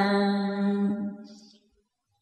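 A long held note of Vietnamese chanted scripture recitation (ngâm), steady in pitch, fading out about a second and a half in, then silence.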